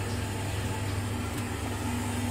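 Worcester 24i RSF gas combi boiler running on hot-water demand, its burner firing and fan turning: a steady low hum. The burner is modulating down from maximum pressure as the hot water heats up.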